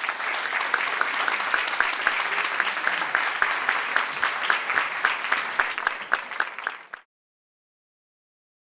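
Audience applauding at the close of a talk, with a dense patter of many hands and one near clapper standing out a few times a second. The applause cuts off suddenly about seven seconds in.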